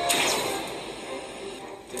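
A single pistol shot from the TV episode's soundtrack, a sharp crack at the very start that rings out and fades over about a second, with the show's music underneath.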